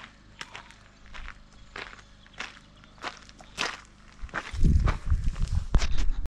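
Footsteps crunching on gravel, a little under two steps a second, growing louder as they approach. Near the end, loud rubbing and knocking as a hand handles the camera mounted on the model aeroplane.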